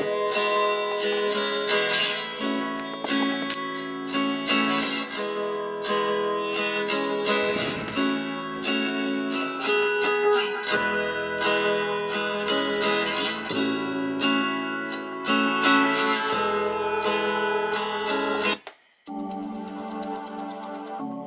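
A song playing from the built-in stereo speakers of a Zettaly Avy Android smart speaker. Near the end it stops for a moment and the next track begins.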